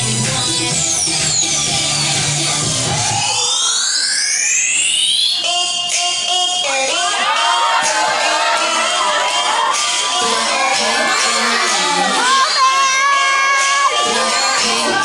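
Electronic dance music played loud over a sound system: a few seconds in, the beat and bass drop out under rising synth sweeps and a short stuttering chord, a transition in a dance medley. After that, many voices shout and cheer over the music.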